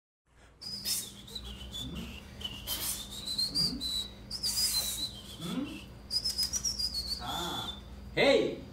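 A single high whistle that wavers up and down in pitch, held almost without a break from just under a second in until near the end. Short hissy bursts and a few faint low rising glides sound beneath it.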